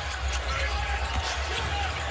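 Basketball arena sound during live play: a ball bouncing on the hardwood court over a steady crowd rumble.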